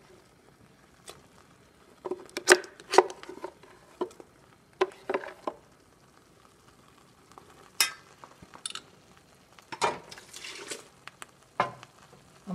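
A metal spoon scraping and tapping a ground spice paste out of a plastic blender jar into a stainless steel pot of leaves: a string of separate sharp clicks and knocks, with a short scrape near the end.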